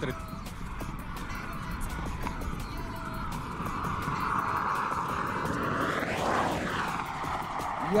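Audi A8 at full throttle approaching at over 200 km/h, its engine and tyre noise building. It passes close by about six seconds in with a sharp drop in pitch, then fades away.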